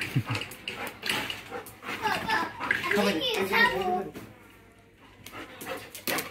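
People talking indistinctly, a child's voice among them, then a quieter stretch near the end.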